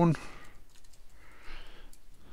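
Typing on a computer keyboard: a few scattered, fairly quiet keystrokes.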